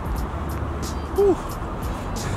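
Steady outdoor background noise with a low rumble like distant traffic, and one brief voiced sound about a second in.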